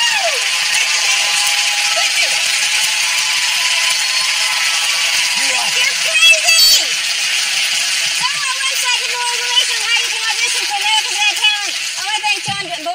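A studio audience applauding and cheering, with whoops and shouts over steady clapping after a card trick's reveal.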